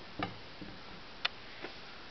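Four light clicks and taps at uneven spacing over a faint steady room hiss, the sharpest a little past halfway.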